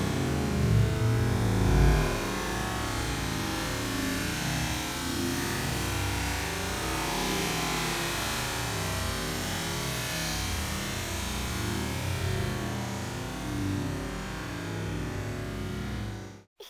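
Splash of a body hitting a swimming pool in a cannonball jump in the first two seconds, then a steady rushing wash of noise with music mixed in.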